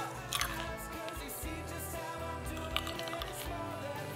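A green grape being bitten and chewed, a few short sharp bites heard over quiet background music.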